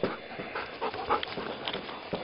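A dog panting quietly, with a few faint short rustles scattered through.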